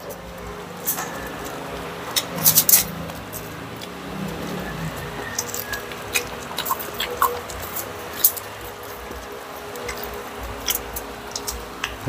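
Crispy fried pork belly crunching as it is torn apart by hand and chewed, in irregular sharp clicks, with a quick cluster of crunches about two and a half seconds in and another sharp crunch past the middle.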